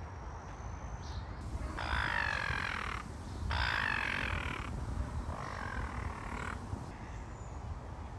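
A raven calling three long, drawn-out caws, each lasting over a second, over a steady low rumble.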